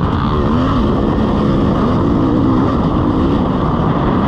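KTM EXC 300 two-stroke dirt bike engine running under way on a trail, its pitch rising and falling as the throttle is worked.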